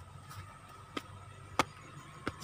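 Footsteps as he climbs up onto a stage: two sharp taps, about a second in and half a second later, over a faint steady high hum.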